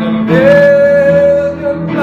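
A male voice sings one long held high note, sliding up into it just after the start and releasing it near the end, over steady instrumental accompaniment in a live musical-theatre duet.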